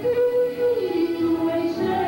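A woman singing a gospel song into a microphone, holding long notes, with the melody stepping down in pitch about a second in.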